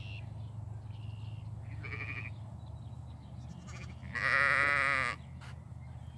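Sheep bleating: two short, higher calls in the first two seconds, then one loud bleat of about a second with a wavering pitch a little past the middle.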